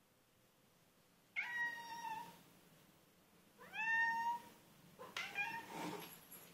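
Ginger tabby cat meowing three times, drawn-out calls that rise at the start and then hold, about two seconds apart: demanding meows begging for milk.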